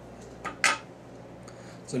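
Small metal fly-tying tools clinking: a faint click, then two sharp clicks about half a second in, the second the loudest and ringing briefly.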